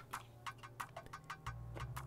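Light, irregular clicks and taps from a plastic panel-mount USB adapter being handled and fitted into a wooden cigar box, over a faint low hum.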